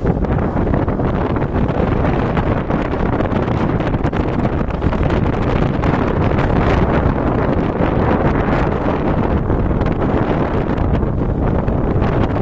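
Steady wind noise buffeting the microphone of a rider on a moving two-wheeler, over the vehicle's running and road noise.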